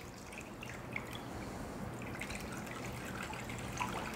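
Water poured from a glass pitcher into a glass baking dish, a faint steady trickle and splash as it fills the water bath around a covered flan pan.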